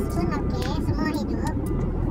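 A voice talking or singing over background music, with a steady low rumble underneath.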